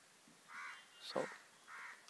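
A crow cawing twice, two short calls about a second apart.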